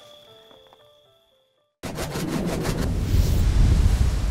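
A few quiet closing-music notes trail off, then after a brief silence a logo sound effect comes in suddenly: a loud rushing whoosh over a deep rumble that grows louder toward the end.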